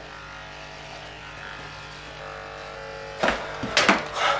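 Corded electric hair clippers buzzing steadily as they trim leg hair. Near the end there are a few sharp, louder knocks.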